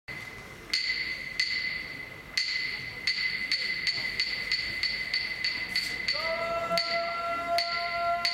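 Wooden hyoshigi clappers struck in a series of sharp, ringing claps that speed up and then slow again. About six seconds in, a yobidashi starts a long, drawn-out sung call.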